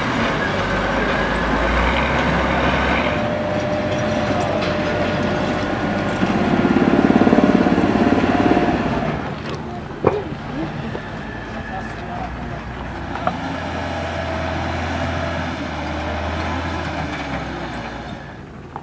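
Diesel engine of a wheel loader running at work clearing rubble, with a low rumble that swells louder for a few seconds in the middle. A single sharp knock comes about ten seconds in.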